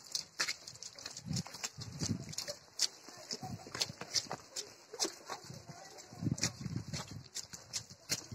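Footsteps on a muddy dirt road: many irregular short steps, with children's voices faint in the background.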